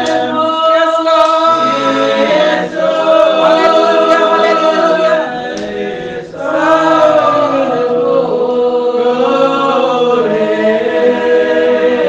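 A group of voices singing a slow worship song unaccompanied, in long held notes, with short breaks between phrases about a third and halfway through.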